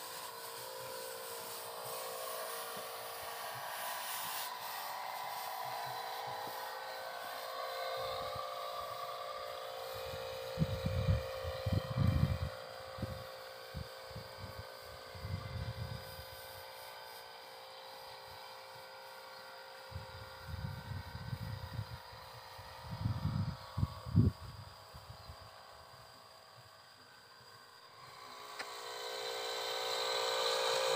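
Engine-driven power sprayer running with a steady hum while crop spray is pumped through a long hose. Low rumbling bursts come and go on the microphone from about a third of the way in.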